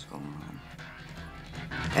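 A film soundtrack playing from a phone: a low sustained musical drone with a faint voice under it, and the voice grows louder near the end.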